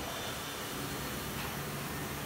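Steady background noise: an even hiss with no distinct sounds in it.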